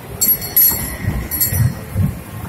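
Small electric kiddie ride train rolling past at close range, its carriages running over the track with an uneven low rumble. Two short high-pitched ringing bursts come through, one about a quarter second in and another around a second and a half.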